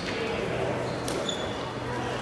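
Murmur of voices echoing in a large sports hall, with a couple of light taps and a short high squeak just past a second in.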